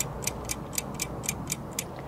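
Ticking clock sound effect, about four even ticks a second, marking the pause that viewers are given to answer. The ticking stops near the end.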